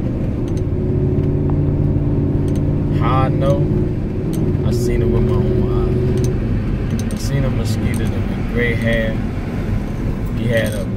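Steady drone of a vehicle's engine and road noise heard from inside the cabin while driving, with a man's voice breaking in briefly about three seconds in, around five seconds and near the end.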